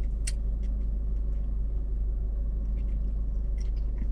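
Car idling, a steady low rumble with a faint hum, heard from inside the cabin. A few light clicks come from someone eating sushi with chopsticks.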